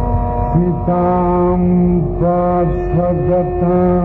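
Carnatic vocal music: a male voice sings a sloka in long held notes joined by sliding, wavering ornaments, over a steady tanpura drone.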